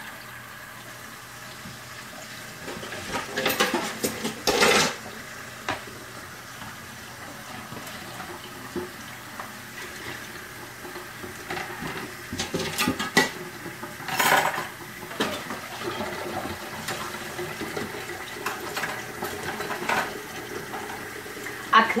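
Kitchen tap running steadily into a stainless-steel sink during hand dishwashing, with scattered clinks and clatters of cutlery, a frying pan and dishes. The loudest clatters come about four seconds in and again about fourteen seconds in.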